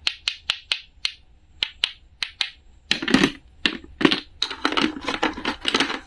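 Two halves of a painted wooden toy fruit clicked together, about nine sharp wooden clicks in the first two and a half seconds, followed by a denser clatter of wooden toy food pieces being handled and set down.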